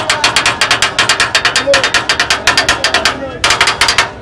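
Iron frame of a watermelon cart beaten by hand with a small hard striker: fast, even metallic clacks, about nine a second, with a short break near the end before the beat picks up again.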